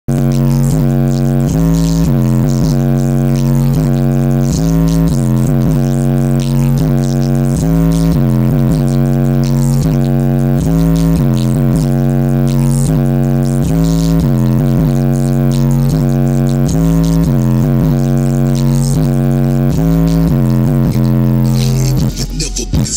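Bass-trick track played loud through two 10-inch Rockford Fosgate R1 subwoofers, heard inside the car cabin: a steady low droning bass note with repeated quick dips and glides in pitch, which cuts off suddenly at the end.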